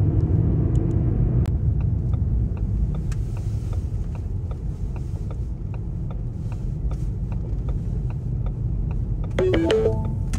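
Hatchback car being driven slowly, a steady low rumble of engine and tyres heard from inside the cabin, with faint regular ticks about twice a second.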